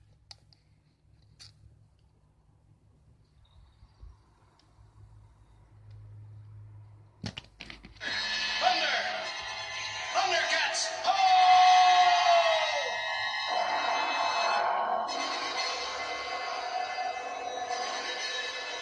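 Quiet room hum for about seven seconds, a click, then a television playing a cartoon soundtrack: music with voices, heard through the room from the TV speaker.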